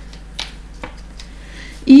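A few light clicks of polymer-clay beads and a metal chain knocking together as a necklace is handled and laid out on paper.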